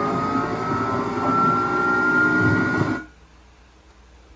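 Sports car engine running hard at speed as the car races past, a rising whine over a dense roar. It cuts off abruptly about three seconds in, leaving a low hiss.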